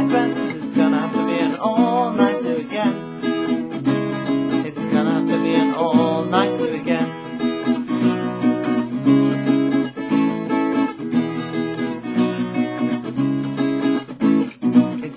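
Acoustic guitar strummed in a steady rhythm, an instrumental passage of chords with no singing.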